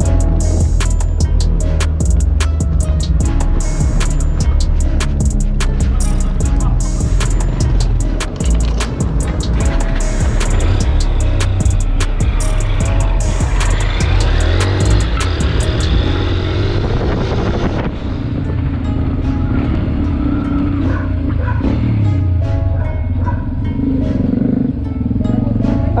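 Background music with a heavy, steady bass line and fast, regular percussion ticks; about two-thirds of the way through the treble drops away and the bass carries on.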